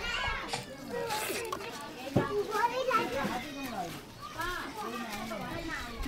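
A small child and adults talking, with one short knock about two seconds in.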